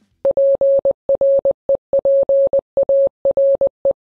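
Morse code sent as a single steady mid-pitched tone, keyed on and off in a string of short and long elements separated by brief silences.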